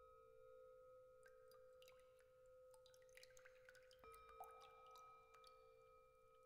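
Soft percussion intro: long, pure ringing tones held under a scatter of light ticks and tinkles. A new ringing tone is struck about four seconds in, with one note bending downward just after.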